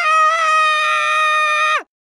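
A cartoon character's long, high-pitched scream, held steady, that drops in pitch and cuts off shortly before the end.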